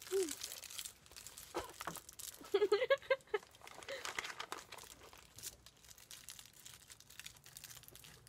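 Plastic candy wrappers and a plastic candy bag crinkling as small wrapped candies are handled and unwrapped: a run of small crackles that thins out in the second half. A short burst of voice comes about two and a half seconds in.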